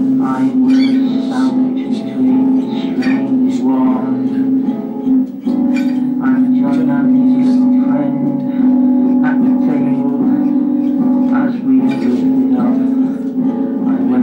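A man singing over an acoustic guitar, playing along steadily with a strong, sustained low tone.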